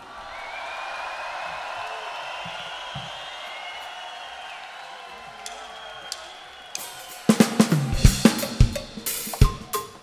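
Live crowd cheering after a song ends, slowly fading. About seven seconds in, a rock drum kit starts up with kick, snare and cymbal hits, coming faster toward the end.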